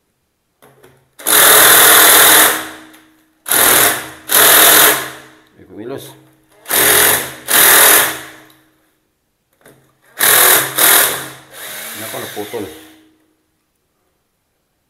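Cordless drill run in about eight short bursts of a second or two each, its bit working into the old toilet floor flange; the motor winds down between bursts, and the last burst is weaker.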